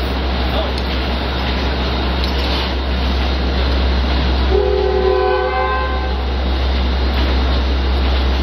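Amtrak passenger train rolling past with a steady rumble of steel wheels on the rails. A train horn chord sounds for about a second and a half around the middle.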